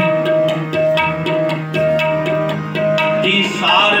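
Harmonium and tabla playing a kirtan passage. The harmonium holds a drone and repeats a short melodic note about every half second over a steady tabla rhythm. A singing voice comes in near the end.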